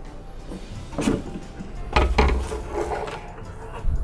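Thin aluminium grow-light reflector sheet being handled and flexed, with rustling and a few knocks against a wooden tabletop. The loudest, deepest knock comes about two seconds in.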